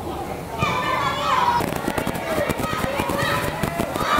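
Footballers shouting during a shooting drill on an outdoor pitch. From about a second and a half in, a quick run of sharp knocks follows, the sound of balls being kicked and struck.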